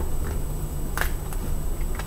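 Low steady hum with a couple of faint soft clicks, about a second in and again near the end.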